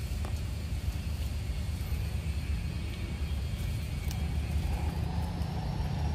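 Steady low rumble of wind buffeting the microphone, with a faint, thin high tone over it.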